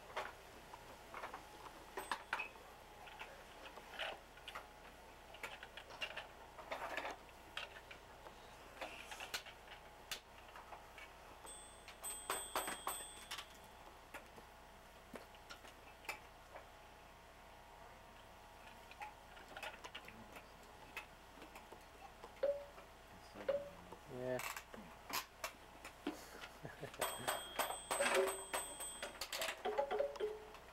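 Light clicks and clatters of a plastic toy train being handled and pushed on carpet, with brief high ringing from the toy twice, about twelve seconds in and near the end. A toddler makes a few short babbling sounds along the way.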